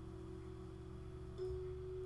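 A faint, steady single tone, like a hum, over low room rumble; it steps slightly higher in pitch about one and a half seconds in.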